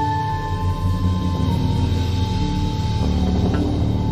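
Live free-improvised jazz ensemble playing: a long held high note, which steps down once about a second and a half in and stops near three seconds, over a dense, low, continuous bed of sound.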